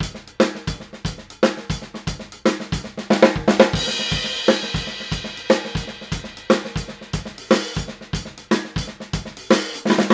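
Mapex Armory Daisy Cutter 14x6.5 snare drum with a 1 mm hammered steel shell, played with sticks in a steady groove with accents about once a second, the head ringing openly after each hit. Cymbals join in, with one crash about three and a half seconds in that washes for a couple of seconds.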